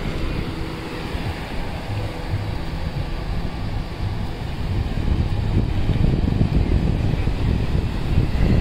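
Wind buffeting the microphone over the steady wash of sea waves, getting a little louder in the second half.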